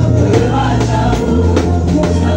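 Gospel worship music: voices singing over a sustained bass line and a steady drum beat, with the bass moving to a lower note about halfway through.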